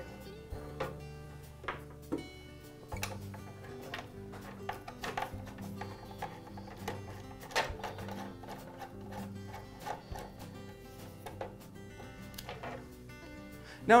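Soft background music with steady held notes, over a few light clicks.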